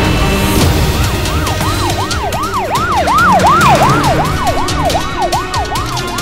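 Police siren sounding in quick rising-and-falling sweeps, about three a second. It comes in about a second in, grows louder toward the middle and fades near the end.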